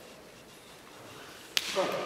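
A single sharp slap about one and a half seconds in, as a hand strikes the partner's forearm in a hand-to-arm contact.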